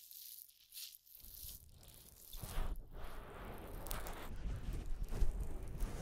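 Crackly rustling and rubbing close to the microphone, as in ear-cleaning ASMR, starting about a second in and growing louder.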